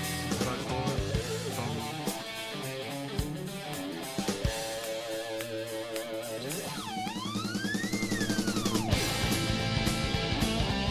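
Instrumental rock recording playing: electric guitar lead over bass and drum kit. Near the end, one guitar note sweeps up in pitch and comes back down.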